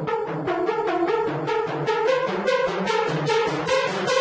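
Hardstyle raw lead synth (Toxic Biohazard) playing short chopped stabs, about four to five a second, growing steadily brighter as its automated low-pass filter cutoff sweeps open: a tension build.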